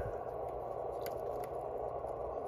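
Quiet steady room hum with a single faint tick about a second in, as a small ground screw is turned out of a radio's metal rear panel by hand.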